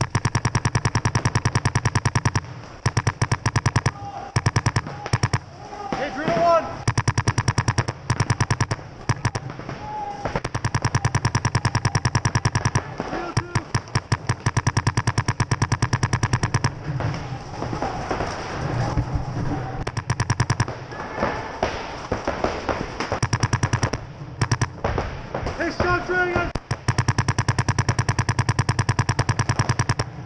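Electronic paintball marker firing in long, rapid strings of shots, with short pauses between strings.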